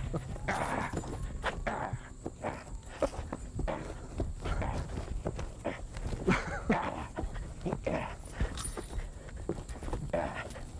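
Scuffle with a live white-tailed buck on grass: hooves and feet thump and scrape irregularly as men wrestle the deer by its antlers and legs, with short grunts among the thumps.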